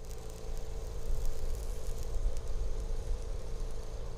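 Electric arc welding on a steel pipe fence rail and post: a steady crackling sizzle from the arc, over a low, even hum.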